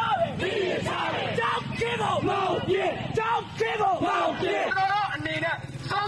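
A crowd of protesters shouting slogans together, a fast string of short chanted syllables.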